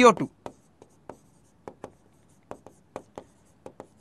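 Pen writing on a board: about a dozen short, irregularly spaced taps and scratches as letters are written.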